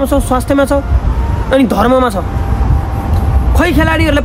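A man speaking in short phrases with pauses between them, over a steady low background rumble.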